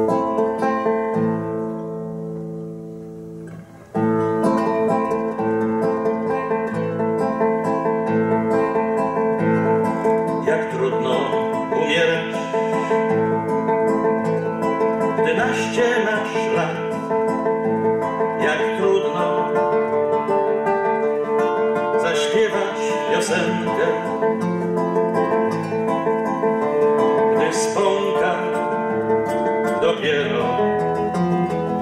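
Nylon-string classical guitar played solo: a chord struck at the start rings and fades for about four seconds, then continuous playing picks up and carries on steadily.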